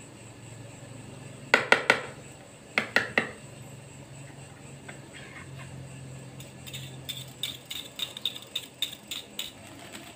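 Metal spoon clinking against a plastic mixing bowl and wire whisk as a spoonful of instant yeast is tipped in: a few sharp clicks in the first three seconds, then a quick run of light taps in the second half.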